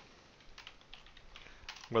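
Computer keyboard typing: a quick run of faint keystrokes as a short line of text is entered.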